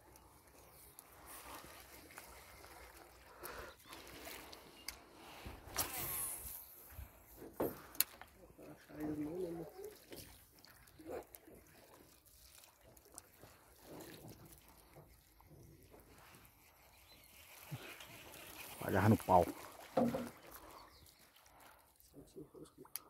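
Water sloshing quietly around a small boat, with a few light knocks and short muffled voice sounds, the loudest of them about nineteen seconds in.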